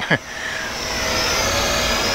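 Eachine E38 quadcopter's brushed coreless motors and propellers buzzing in flight: a steady whine that grows louder over the first second, then holds level.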